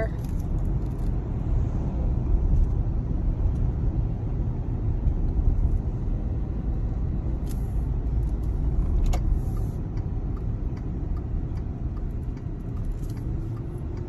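Steady road and engine noise inside a moving car's cabin, with two brief clicks about seven and nine seconds in.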